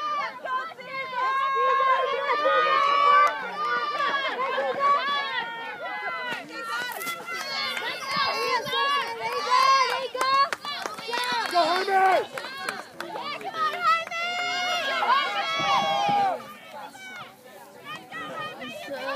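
Several spectators' voices shouting and cheering at once, overlapping throughout, loudest in a few bursts and dropping away near the end.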